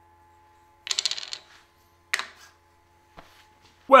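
Small jarrah wooden lidded box being handled: a brief clattering rattle about a second in, a single sharp click about a second later, and a faint tap near the end.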